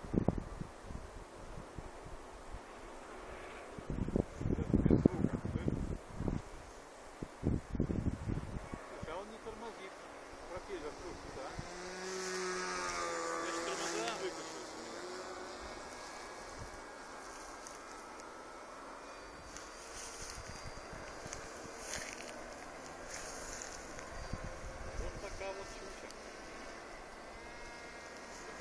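Battery-electric motor and propeller of a radio-controlled flying wing buzzing as the plane passes close overhead, about midway through, the pitch curving as it goes by. Earlier, gusts of wind rumble loudly on the microphone.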